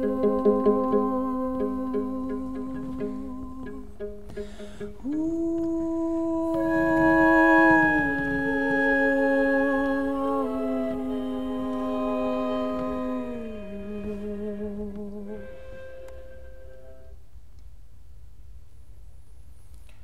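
Voices humming and singing long held notes in close harmony, with slow vibrato, the chord shifting every few seconds. The last notes fade out about 17 seconds in.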